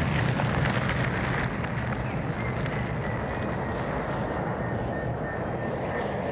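Steady rushing tyre and road noise of a Tesla Model X rolling slowly along a paved driveway, with a faint thin tone coming in about a third of the way through.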